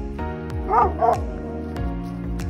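Yellow Labrador retriever giving two quick, high barks about a third of a second apart, over background music.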